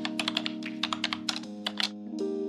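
Rapid keyboard typing clicks, a sound effect for on-screen text being typed out letter by letter, over background music holding steady sustained chords. The clicks stop shortly before the end.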